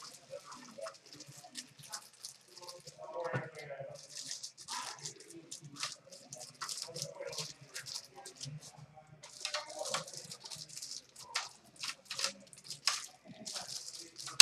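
Plastic wrapper crinkling and rustling in the hands as it is peeled off a pack of cased trading cards, in quick irregular crackles.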